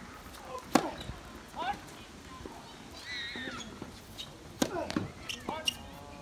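Sharp tennis-ball impacts on the court: one loud hit about a second in, then a quick cluster of three or four more near the end. Short bits of voice come in between.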